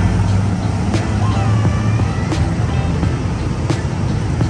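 City street traffic: vehicle engines running steadily, with background music over it.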